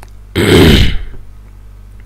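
A man clearing his throat once: a short, loud, rough burst of about half a second near the start.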